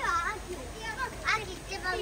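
Children's high-pitched voices, several short calls and exclamations in quick succession.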